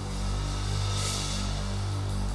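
Live rock band playing hard rock: electric guitar and bass holding low notes over drums.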